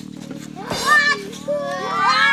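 Young children calling out and shouting while they play, their high voices gliding up and down, with a longer run of rising calls in the second half.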